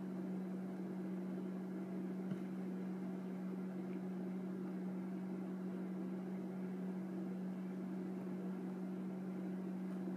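Steady low mechanical hum with a light hiss, an appliance or fan running in the room, with one faint tick about two seconds in.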